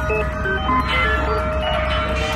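Electronic music: a melody of short, quick notes stepping up and down over a single held tone and a steady low bass.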